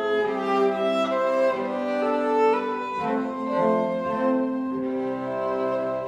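String quartet of two violins, viola and cello playing a tango in held, bowed chords, the notes changing about every half second to a second.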